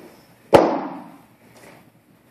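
A single sharp crack about half a second in, dying away over about half a second: an impact made during a martial-arts long-staff form.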